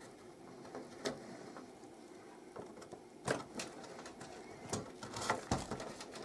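Faint handling noises from hands working a DDR3 RAM stick into its motherboard slot inside a desktop PC case, among the cables: about half a dozen small sharp clicks and knocks, scattered through a quiet background.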